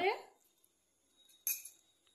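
Kitchenware clinking once, a short sharp knock about one and a half seconds in.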